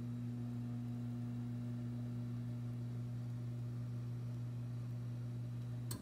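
A steady, low electrical hum from a running appliance. It cuts off abruptly with a click near the end.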